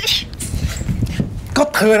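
Breathy, whimpering vocal sounds from a person, opening with a short hissy burst, before a man starts speaking near the end.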